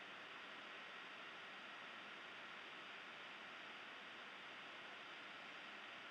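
Near silence: only a faint, steady hiss of background noise, with no distinct sounds.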